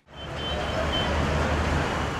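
Street ambience: a steady road-traffic rumble with general outdoor noise, fading in over the first half-second.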